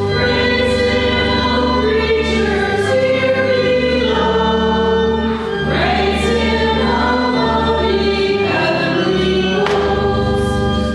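Church choir singing a hymn, with long held notes and no break.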